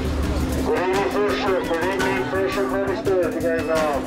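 A person's voice in drawn-out, sliding tones starting about a second in, over a steady low hum.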